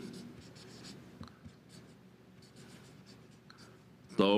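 Faint scratching of a felt-tip marker on paper, a run of short strokes as Chinese characters are written one stroke at a time.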